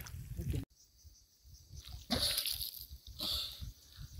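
A man laughing, cut off abruptly under a second in; after a brief silence, two soft splashes of river water from a swimmer.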